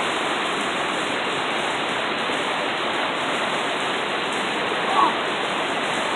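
Fast-flowing creek water rushing over rocks in whitewater rapids, a steady, even rush.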